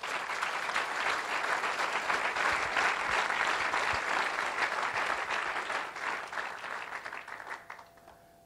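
A church congregation clapping in a long round of applause that tails off over the last second or so.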